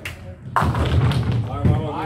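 Nine-pin bowling balls on the lanes: a heavy thud about half a second in, then a low rumbling roll with a couple more knocks, under voices in the hall.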